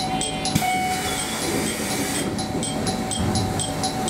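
KiHa 220 diesel railcar idling while stopped at a station, its engine a steady low rumble. About half a second in, a hiss of air lasts roughly a second and a half. Behind it a bell dings rapidly, about four times a second, stopping during the hiss and starting again after it.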